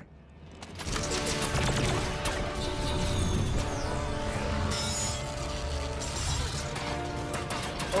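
TV sci-fi action soundtrack: dramatic score comes in about a second in, layered with deep rumble and clanking, crashing battle effects.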